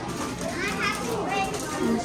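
A young child's high-pitched voice calling out, twice, over people talking in the background.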